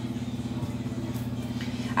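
A steady low motor hum with a fast, even flutter.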